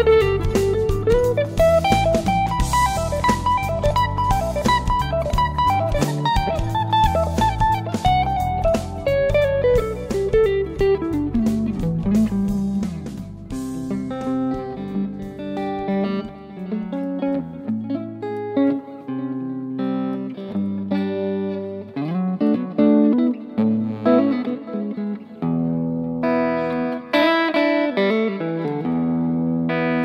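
Electric guitar played live over a backing track. In the first half a melodic line climbs, holds and then falls, with drums underneath. About thirteen seconds in, the drums drop away and sustained chords ring over separate bass notes.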